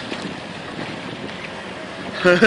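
Steady rushing noise of wind buffeting the microphone over flowing river water.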